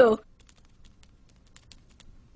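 Faint, irregular light clicks of a small dog's paws pattering across the floor.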